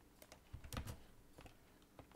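Faint typing on a computer keyboard: a handful of scattered keystrokes.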